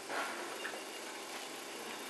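A steady low machine hum under an even hiss, with a brief soft noise just after the start.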